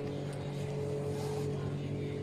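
A steady, unchanging low hum with faint background room noise.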